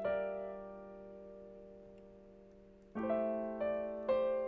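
Slow, quiet piano music: a chord struck at the start fades away over nearly three seconds, then new chords are played in quick succession near the end.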